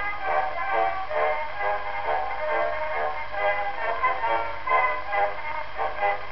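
Instrumental introduction to a song, played back from a 1908 Edison four-minute wax cylinder: thin, band-limited acoustic-era sound, with steady surface noise underneath.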